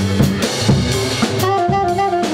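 Live jazz trio playing: alto saxophone, upright double bass and drum kit. Drum and cymbal hits run throughout over a walking low bass line, and the saxophone phrase comes in strongly about one and a half seconds in.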